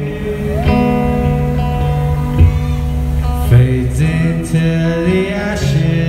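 A live rock band playing a slow passage: electric guitar and held notes over a steady bass line that changes pitch a few times.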